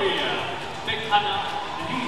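Racket strikes on a shuttlecock during a fast badminton rally, with one sharp hit a little over a second in, under voices.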